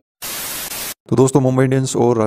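A burst of even, hiss-like static lasting under a second that starts and stops abruptly: a white-noise transition effect at a cut between clips. About a second in, a man starts speaking.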